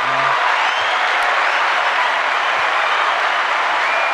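Recorded crowd applause, steady and dense, played in as a sound effect.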